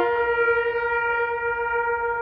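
Trumpet playing a slow solo, holding one long note after a lower note stops right at the start.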